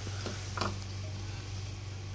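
Vegetable oil poured in a thin stream into a non-stick pan, barely heard over a steady low hum; one light click a little over half a second in.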